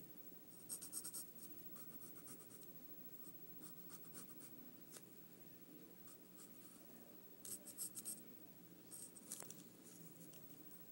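Faint scratching of a pencil drawing lines on paper, in quick short strokes that come in clusters about a second in and again near the end.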